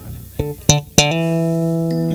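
Live jazz band starting a tune: a few short, separate notes, then one long held note from about a second in.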